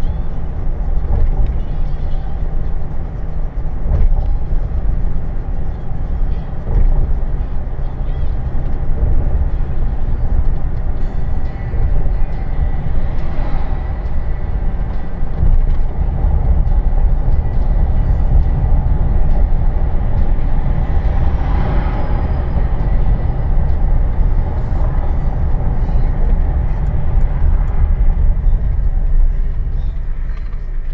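Car road and engine noise heard inside the cabin while driving at speed: a steady, heavy low rumble. The noise swells twice, about halfway through and again about two-thirds of the way in.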